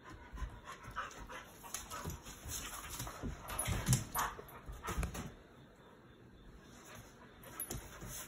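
Two dogs play-wrestling on a dog bed: scuffling and soft dog noises in short irregular bursts, loudest about four seconds in, then quiet for the last few seconds.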